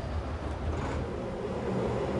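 Steady low machinery rumble and hum. A faint steady higher tone joins it about halfway through.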